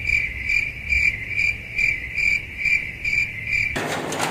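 Cricket chirping sound effect, the stock awkward-silence gag: a steady high chirp repeating about twice a second. It is cut in abruptly and stops suddenly shortly before the end.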